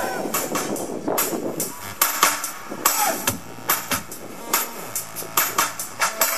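A hip-hop backing track playing through the stage PA: a beat of sharp drum hits, joined about two seconds in by a bass line that steps between notes.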